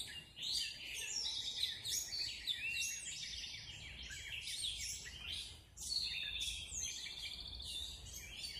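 Several songbirds singing at once in an overlapping morning chorus of high chirps, trills and quick whistled phrases, with a brief lull about two-thirds of the way through.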